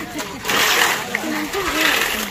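Shovel and hoe blades scraping and slapping through wet concrete mix being spread on the ground, loudest twice: about halfway in and near the end.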